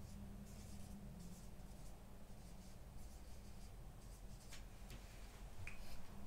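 Felt-tip marker writing a word on a whiteboard: faint scratchy strokes, then a few short clicks in the second half.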